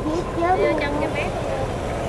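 Steady low rumble of motorbike engines and street traffic, with voices talking over it in the first second or so.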